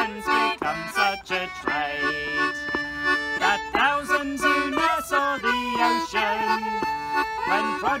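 Concertina and fiddle playing a traditional folk tune together, held reedy chords under a bowed melody with slides.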